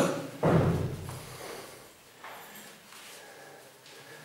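A dull knock about half a second in that fades over about a second, followed by faint handling sounds. It comes from a heavily loaded barbell being gripped with lifting straps as it rests on its box supports.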